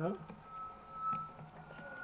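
A steady high whistling tone of audio feedback, which edges up a little in pitch near the end, with a few muffled voice sounds over it.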